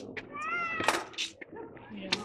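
A short, high-pitched, meow-like squeal from a young child, about half a second long and falling slightly in pitch at the end. A sharp click follows about a second in.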